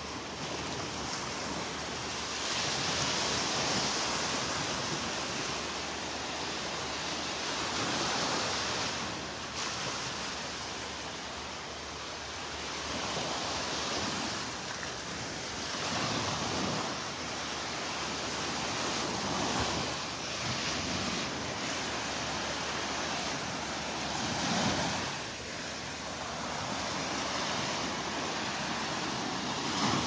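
Small surf breaking and washing up on a sandy beach: a steady rush of water that swells and eases every few seconds as each wave comes in.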